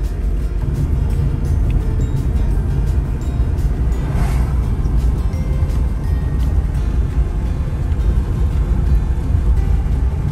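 Steady low road rumble of a car driving on a paved road, heard from inside the cabin, with music playing along. A brief whoosh swells and fades about four seconds in.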